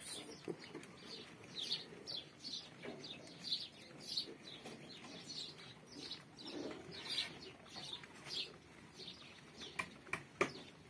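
Small birds chirping over and over, short high chirps about two to three a second, with a faint low murmur beneath.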